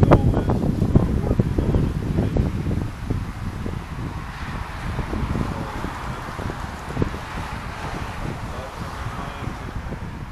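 Wind buffeting the microphone, heaviest in the first few seconds. A car passes on a nearby road from about four seconds in, its tyre rush rising and fading.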